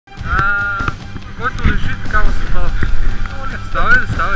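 A person's voice calling out without words, in high, wavering cries several times over.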